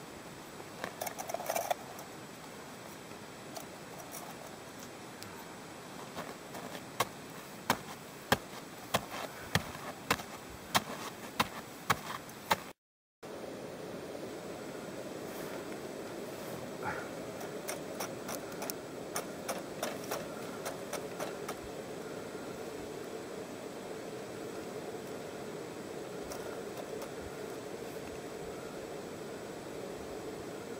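Snow crunching as a cooking pot is scooped through it, a run of sharp crunches about two a second. After a brief dropout, a camping gas stove burner runs with a steady hiss under the pot of snow it is melting.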